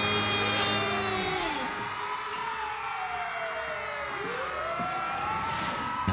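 Siren-like sweeping tones over a concert PA: pitched wails that glide slowly up and fall away in overlapping arcs, each rise and fall taking about two seconds, as the band's music dies away at the start.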